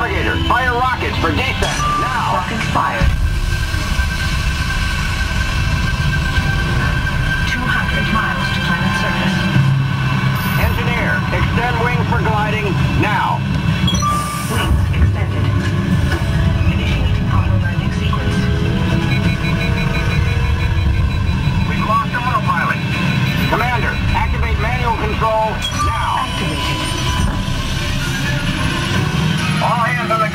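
Motion-simulator ride's onboard soundtrack during the Mars descent and landing: a heavy, continuous low rumble with music and voices over it, and a fast run of beeps a little past the middle.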